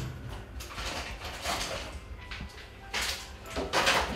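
Handling sounds from a kitchen wall cupboard: several short rustles and light knocks as items are taken out, over a low steady hum.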